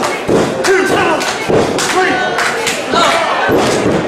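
Wrestling crowd shouting and yelling, with repeated thuds and slaps from the ring.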